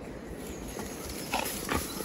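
A dog moving through grass with a training dummy in its mouth: faint rustling and breathing, with two short, slightly louder noises a little past halfway.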